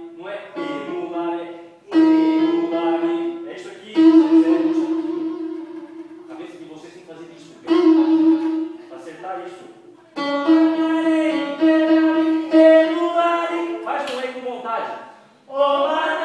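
Piano notes struck one after another, mostly on one repeated pitch, each attack loud and then fading away as it rings, with a voice speaking between them.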